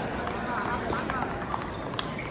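Busy table tennis hall: celluloid-type plastic balls clicking irregularly off tables and paddles at many surrounding tables, over a steady din of many voices.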